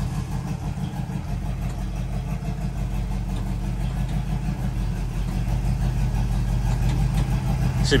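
1986 Oldsmobile Cutlass 442's V8 idling steadily with an even, low rumble.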